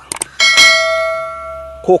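Subscribe-button overlay sound effect: a couple of quick mouse clicks, then a bell notification chime about half a second in that rings and fades away.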